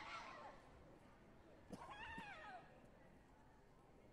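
Faint, high-pitched shouts from a taekwondo fighter, the clearest about two seconds in, rising then falling in pitch, with a couple of sharp knocks around it, over quiet hall ambience.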